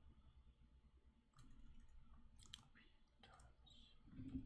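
Near silence with a few faint, scattered computer keyboard keystrokes.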